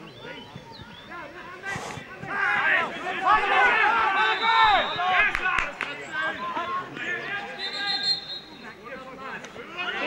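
Men's voices by the pitch, shouting and talking indistinctly, loudest from about two to six seconds in.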